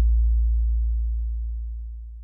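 Deep, low electronic tone from an intro music sting, fading steadily away; its faint higher overtones die out within the first half second, leaving only the low hum.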